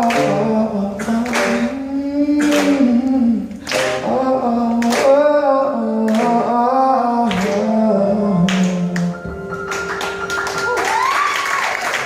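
Live band music: a man singing lead over acoustic guitar, djembe, bass guitar and upright piano, with hand claps. The singing stops about nine seconds in while held notes carry on.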